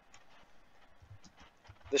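Faint computer keyboard typing: a few scattered, unhurried key clicks.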